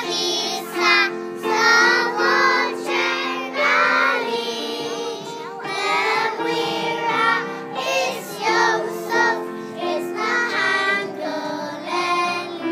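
A group of young children singing a song together, over instrumental accompaniment with held notes.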